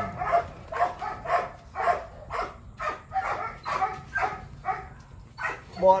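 Belgian Malinois dogs giving a rapid run of short yelping barks, more than a dozen at about two to three a second, as a male and a female tussle during a mating attempt.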